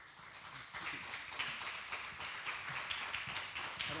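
Audience applause, a dense patter of claps that builds over the first second and then holds steady.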